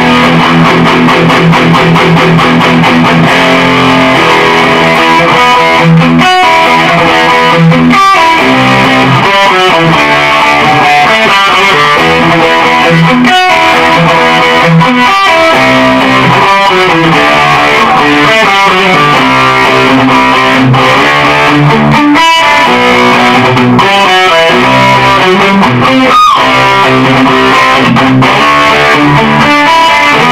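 G&L Custom Shop electric guitar played through a tube amplifier's own distortion with no pedal, a continuous run of loud distorted riffs broken by a few brief stops. The tone is what the player calls powerful.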